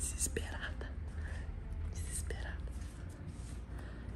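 A man whispering close to the microphone in short hushed phrases.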